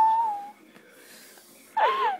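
A woman's high, drawn-out whimper of pain, held on one pitch and fading out about half a second in. After a brief quiet breath, a new wavering cry begins near the end.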